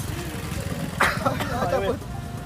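Men's voices laughing and talking briefly, with a short sharp burst of voice about a second in, over a steady low rumble.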